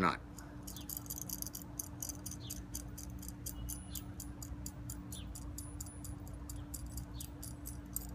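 Quarter-inch steel nut being spun by hand down a threaded rod onto a flat washer and lock washer: many light metallic clicks and clinks, several a second.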